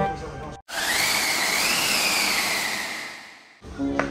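An edited-in whoosh transition effect: a loud rush of noise with a whistle-like tone that rises and then falls, fading out over about two seconds, set off by clean silence on either side.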